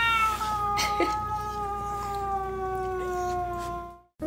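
Domestic cat's long, drawn-out yowl, sliding slowly down in pitch. It is the defensive warning of a frightened cat with a dog nosing toward it.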